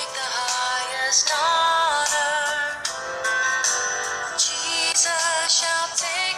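Music with a sung vocal melody, steady throughout.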